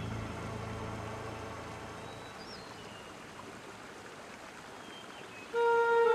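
Steady rush of a shallow, rocky stream, with a faint high chirp about halfway through. Soft music with long held notes comes in near the end.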